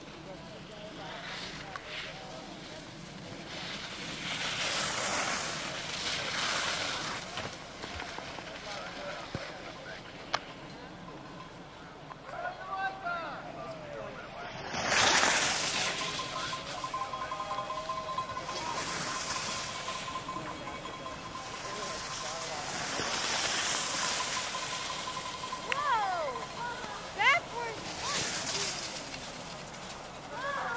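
Distant voices of spectators, with several swells of hissing, rushing noise, the loudest about halfway through, and a faint steady high tone for several seconds after it.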